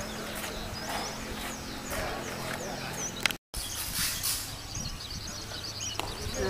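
Open-air ballfield sound: faint distant voices and chatter, with short high chirps repeating like small birds calling. The sound cuts out completely for a moment about halfway through.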